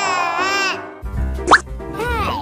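Edited-in background music with a high, wavering, voice-like squeal in the first second, then a quick rising cartoon 'bloop' sound effect about one and a half seconds in.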